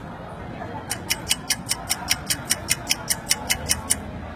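Rapid, evenly spaced ticking, about five ticks a second, starting about a second in and stopping near the end, over a faint murmur of voices.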